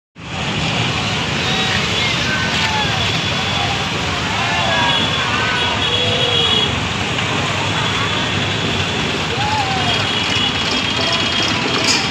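Busy road traffic: the engines and tyre noise of cars, trucks and motorbikes moving slowly in a crowded procession. People's voices call out over it, and short high steady tones sound now and then.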